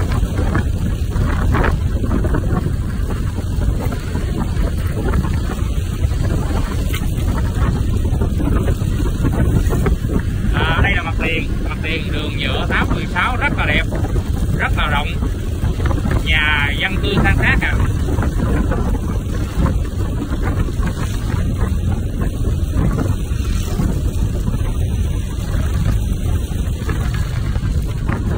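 Steady wind buffeting on the microphone of a moving motorbike, with road and engine rumble underneath.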